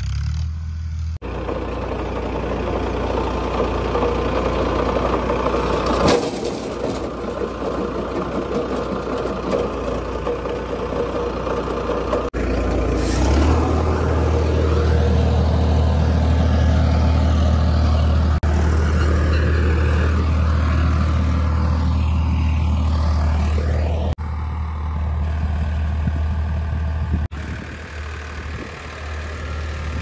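Farm tractor engine running steadily while working a field, in several cut shots, louder through the middle stretch.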